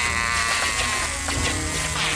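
Cartoon electric-shock effect: a long, wavering, shaking yell from a character being electrocuted through jumper-cable clamps, over a steady electric buzz. The yell trails off about two-thirds of the way through.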